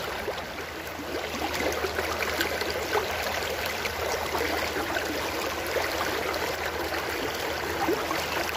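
Shallow river water rushing steadily over rocks in a small rapid.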